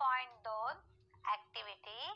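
Speech only: a woman speaking in short syllables, with a faint steady tone underneath.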